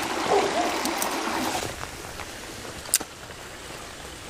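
Shallow stream running over stones, with water sloshing around hands dipped at the surface for the first second and a half, then quieter flow with a single sharp click about three seconds in.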